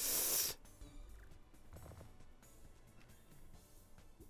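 Sugar Rush slot game audio: faint game music and tumbling-symbol sound effects as a winning cluster clears and the reels refill. It opens with a short, loud burst of hiss-like noise lasting about half a second.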